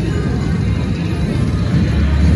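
Slot machine music over the continuous low rumble of a busy casino floor.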